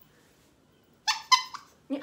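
A small white dog making three short, high-pitched whines about a second in, after a near-silent first second.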